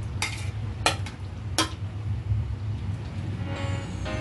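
A metal spoon knocking three times against a ceramic plate as eggplant slices are scraped off it into the pan, over a steady low hum. Background music with pitched notes comes in near the end.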